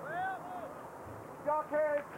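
Horse-race commentator's voice, in two short phrases, over a faint steady background noise.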